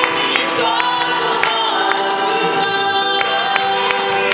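Live gospel worship song: lead singers on microphones with an acoustic guitar and the congregation singing along, over a steady beat of sharp percussive hits.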